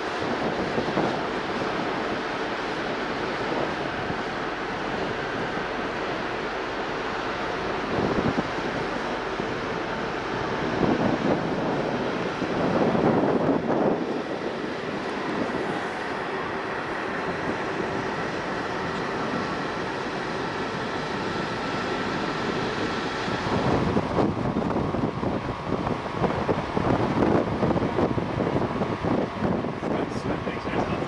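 Wind buffeting the microphone on the deck of a ship under way, over a steady low hum and the wash of the sea. It grows louder and gustier about halfway through and again in the last few seconds.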